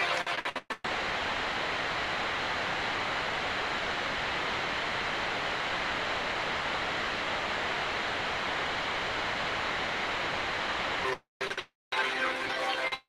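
A steady, even static hiss with no tone or rhythm in it, switching on abruptly about a second in and cutting off sharply near the end. Around it are brief choppy snatches of audio broken by dropouts.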